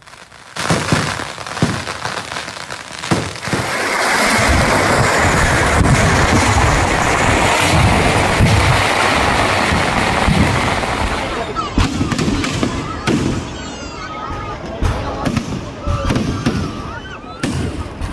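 Festival fireworks and firecrackers going off: a few separate bangs, then from about four seconds in a dense, continuous crackling barrage lasting several seconds, which thins out into scattered sharp bangs near the end.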